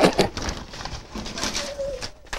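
Boys' stifled, breathy laughter, loud at first and then dying down, with a short held hoot near the end, over the rustle of a paper slip pulled from a cardboard box.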